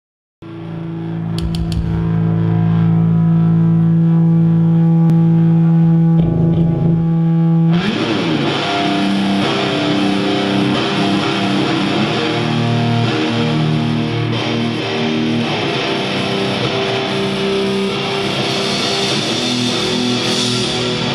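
Metal band playing live: a distorted electric guitar chord rings out alone and held for about eight seconds, then the full band crashes in with dense distorted guitars and a wash of cymbals.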